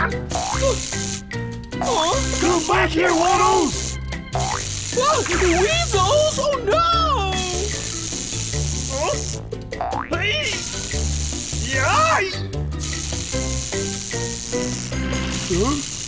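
Cartoon background music with a bouncing bass line, with voice-like squeals that slide up and down in pitch over it several times.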